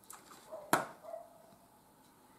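Handling a small wax-melt block in its plastic packaging: light rustling and one sharp plastic click about three-quarters of a second in.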